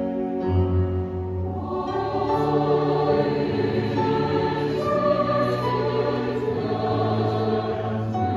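Large SATB choir singing with piano and cello accompaniment. Low sustained notes open the passage, and the full choir comes in about two seconds in and holds on.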